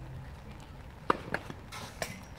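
Tennis ball impacts during a serve and return: two sharp pops about a second in, a quarter-second apart, then a brief scuff near the end.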